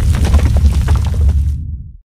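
Logo-animation sound effect: a deep rumble under a dense crackle of shattering, crumbling debris, fading away over the last half second.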